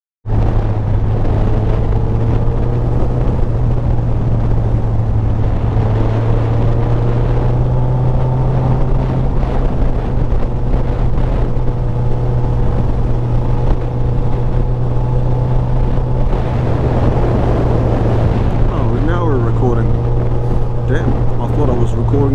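Motorcycle engine running at a steady road speed with wind rush on the microphone, its pitch drifting up and down a little as the speed changes.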